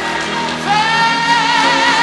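Gospel choir recording: a high sung note with vibrato enters about two-thirds of a second in and is held over the accompaniment.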